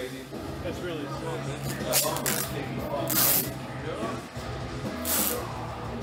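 Trigger spray bottle spritzing detailing spray onto car paint: three short hissing sprays, about two, three and five seconds in, over background music.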